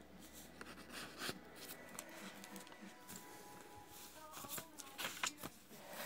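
Faint rustling and light taps of paper and card being handled as the pages of a handmade paper journal are turned.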